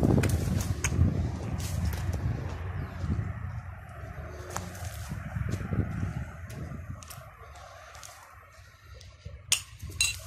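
Footsteps and brushing through dry weeds on gravelly ground: scattered short clicks over a steady low outdoor rumble that fades toward the end.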